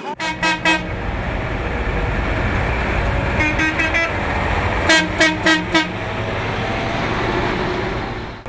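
Convoy of heavy diesel dump trucks driving by with engines running, and horns honking in short runs of several toots: just after the start, around three and a half seconds in, and loudest about five seconds in.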